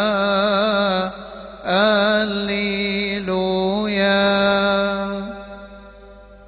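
A male cantor chanting a Coptic hymn unaccompanied, in long melismatic notes with vibrato. There is a brief break for breath about a second in, and the voice fades away near the end into a lingering reverberant tail.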